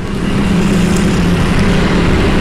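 Steady machine hum, a low even tone under a rush of noise.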